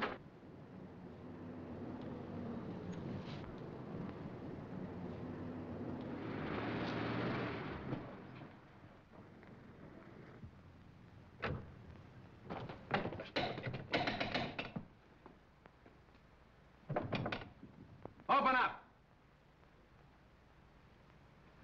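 A 1930s sedan's engine running as the car drives up and stops, followed by a series of clicks and thuds as the car doors open and shut. Two short, louder sounds come near the end.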